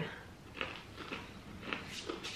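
Faint crunching of a candy-coated pretzel being bitten and chewed, a few crisp crackles about half a second apart.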